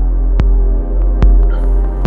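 Electronic track loop playing back: a steady, loud sub-bass note around 45 Hz under a buzzier bassline, with a kick drum hitting twice, about 0.8 s apart, and a few light clicks between. Each kick briefly ducks the sub through an envelope-follower-driven EQ cut at about 44 Hz, so the kick and sub don't clash while the bassline's noisy upper part stays.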